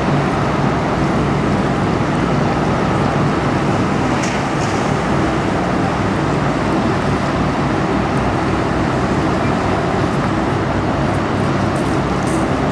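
Steady low drone of the lake freighter Paul R. Tregurtha's engines as it passes close, under an even rushing noise that does not let up.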